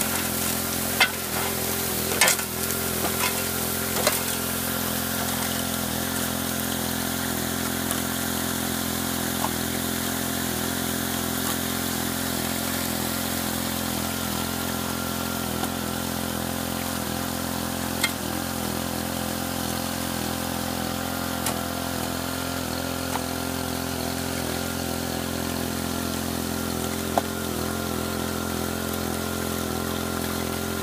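Water jets from a high banker's spray-bar plumbing hissing steadily into the hopper, over the steady drone of the water pump feeding it. A few sharp knocks come through, several in the first few seconds and odd ones later.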